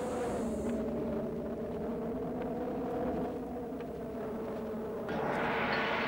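A steady low drone of several sustained tones over a faint rumble, with a hiss swelling in near the end.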